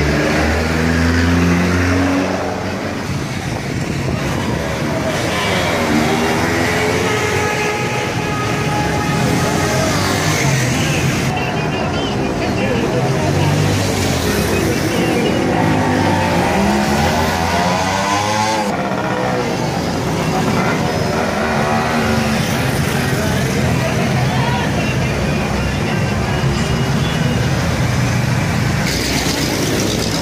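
Busy street traffic, mostly motorcycles, with engines running and revving past, over the chatter of a crowd. Engine pitch rises and falls a few times as vehicles accelerate by.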